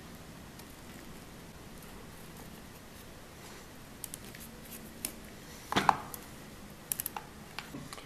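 Quiet for about four seconds, then a few small clicks and taps and one short clatter a little before the six-second mark: a screwdriver working tiny screws out of a toothbrush's sheet-metal drive frame.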